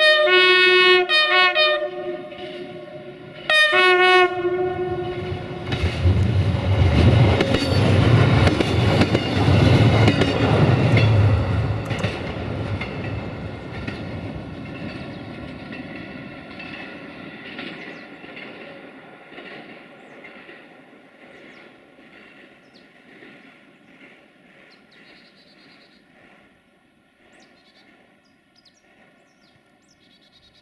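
Duewag-built DB Class 628 diesel multiple unit sounding its horn in several short blasts, then one more blast a few seconds later. The railcar then passes close, its engine and wheels loudest for a few seconds, and fades away with wheels clicking over the rail joints.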